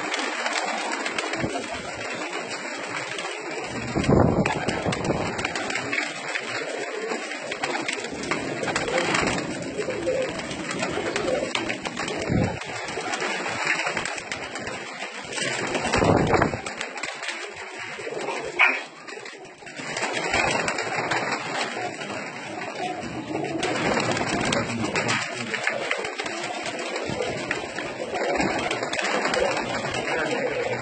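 Domestic pigeons cooing steadily, with a few louder moments and one short sharp knock about two-thirds of the way through.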